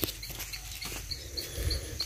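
A faint, high chirp repeating evenly about three times a second, from an insect or bird in the pasture, with a few soft clicks and a low rumble underneath.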